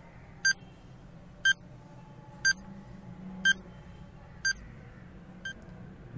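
Countdown timer sound effect beeping once a second: six short, high-pitched beeps, the last one fainter.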